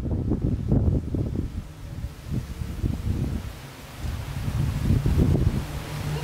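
Wind buffeting the microphone outdoors, an uneven low rumble that rises and falls in gusts.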